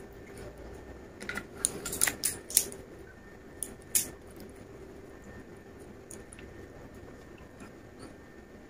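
Light clicks and taps from a drinking glass and a glass bottle being handled on a table: a quick cluster of them in the first three seconds and one more at about four seconds.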